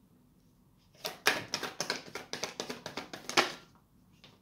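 A deck of tarot cards being shuffled in the hands: a quick run of card-on-card clicks and flaps that starts about a second in and stops shortly before the end.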